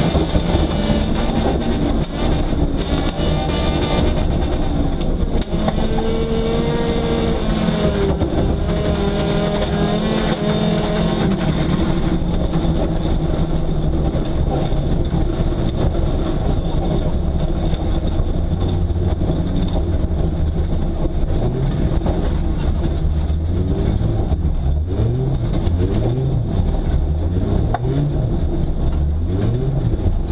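Volvo 850 folkrace car's five-cylinder engine heard from inside the cabin, revving hard and dropping back repeatedly, with a few knocks and rattles early on. Near the end the revs rise and fall in short quick swings as the car slows.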